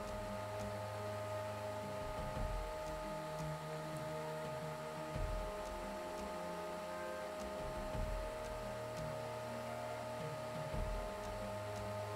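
Small 12 V DC computer-style cooling fan running with a steady whine, switched on by a W1209 thermostat relay because the sensor is still above its 32-degree set point. Faint background music underneath.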